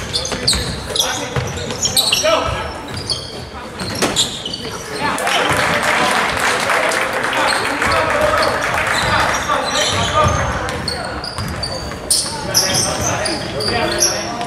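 Basketball game sounds in a gym: a ball bouncing on the hardwood court, sneakers squeaking and players and spectators calling out. The crowd noise grows louder for several seconds in the middle.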